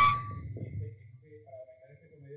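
A loud thump and rumble of a microphone being handled, with a brief whistling feedback tone right at the start, then faint voices in the hall.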